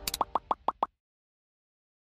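A quick run of about five short pop sound effects in the first second, evenly spaced, then dead silence.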